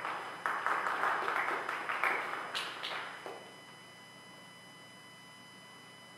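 A small congregation applauding for about three seconds, then dying away.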